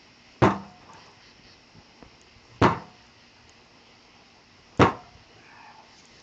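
A long pole striking a burning gas tank three times, about two seconds apart, each a sharp, loud whack that dies away quickly as the blow knocks a puff of fire and smoke out of the tank.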